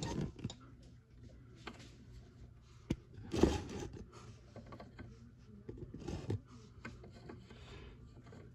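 A Phillips screwdriver turning out a light switch's metal mounting screw: faint, scattered small clicks and scrapes of metal on metal.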